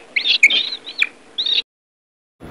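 A run of about four short, high-pitched animal calls that cut off abruptly about one and a half seconds in.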